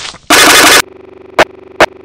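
A blast of loud, clipped noise, followed by a low buzzing hum broken by three short loud bursts, then an abrupt cut-off.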